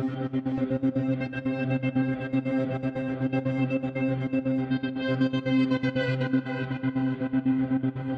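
Sampled guitar pad from 8Dio Emotional Guitars (Admiration pads), lightly distorted, holding a chord that a tempo-synced gate chops into a fast, even pulsing rhythm.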